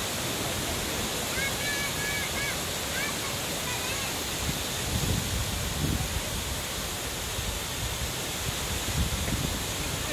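Waterfall: many streams of water pouring over a tall rock cliff into a pool, rushing steadily. A few short high chirps sound over it in the first four seconds.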